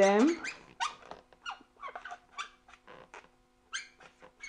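Marker tip squeaking on an inflated latex balloon as a word is written on it: a run of short, irregular squeaks and scratches. The squeaks pause briefly about three seconds in, and one more comes near the end.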